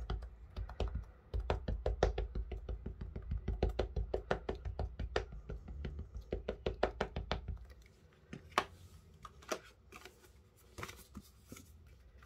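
An ink pad dabbed rapidly onto a clear stamp on its acrylic sheet, several light taps a second, to ink it for stamping. The tapping stops about eight seconds in, leaving a few scattered light clicks.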